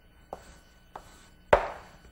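Chalk striking a blackboard as lines are drawn: three short taps, the last and loudest about one and a half seconds in.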